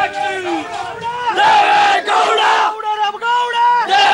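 Crowd of men shouting political slogans together, several voices overlapping in long, drawn-out shouts.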